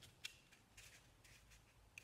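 Near silence, with faint rustling and a couple of light clicks from paper being handled: an orange construction-paper lantern turned over in the hands.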